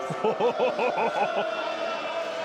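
A man laughing: a quick run of about seven short 'ha' pulses in the first second and a half, then trailing off.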